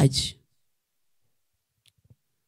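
A woman's voice trailing off in the first moment, then near silence with a single faint click near the end.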